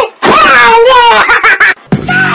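A high-pitched voice wailing and whining in rising and falling cries, broken by a short gap near the end.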